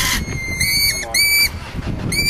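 Lorikeets calling close by: a harsh screech right at the start, then a held shrill note and two quick runs of short, high, arching chirps.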